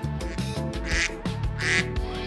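Background music with a steady beat, with two short comic sound effects dropped in over it, one about a second in and one just before the end.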